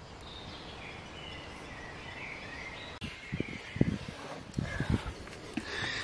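Quiet outdoor ambience with faint bird song. From about halfway, a scatter of soft, irregular knocks and clicks from food handling at the table.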